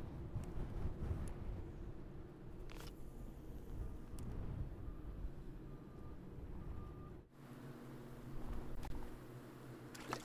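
Wind buffeting the microphone over the steady rush of fast, turbulent river current, with a few faint clicks. The low rumble drops off suddenly about seven seconds in.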